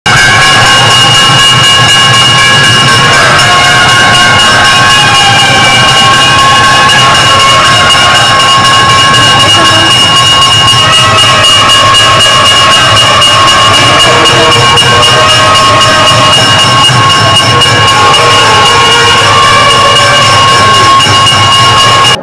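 Brass temple hand bell rung rapidly and continuously during the camphor aarti. Its steady ringing tones sound over a loud, dense din of fast, even strokes, and it cuts off suddenly at the end.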